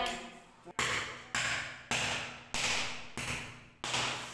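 A hammer striking a chisel into the cement mortar bed under lifted ceramic floor tiles: six regular blows, about one every 0.6 s, each ringing briefly in a small room.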